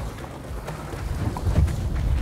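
Wind buffeting the microphone on a boat in rough seas: a gusty low rumble that swells to its loudest about a second and a half in.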